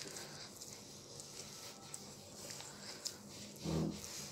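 Hands kneading soft, sticky yeast dough in a glass bowl: faint squishing and pressing with a few light ticks. A brief low sound comes shortly before the end.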